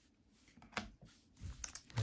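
Quiet handling of a stack of trading cards, with a few soft taps and clicks as the cards are moved and set down, one sharper tick about a second in.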